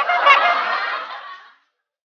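A honking, goose-like call lasting about a second and a half, cutting off suddenly.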